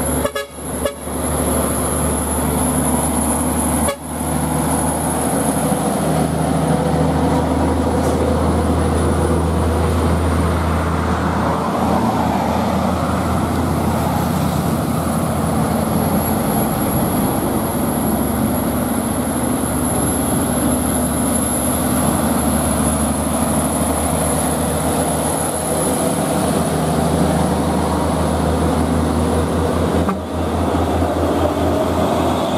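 Heavy diesel trucks, among them a FAW JH6 tractor unit, driving past on a highway: engines running with a steady low hum and tyre noise on the asphalt, with vehicle horn toots.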